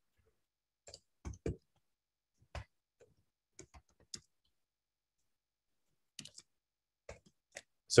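Computer keyboard typing: about a dozen scattered keystroke clicks with silence between them and a pause of about two seconds midway.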